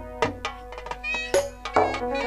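Live jatra band music: a sustained wind-instrument melody of held notes over sharp drum strikes.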